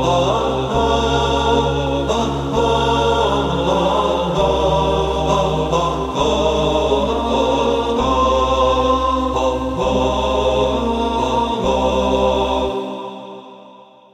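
Intro music of chanting voices over a steady low drone, fading out over the last two seconds or so.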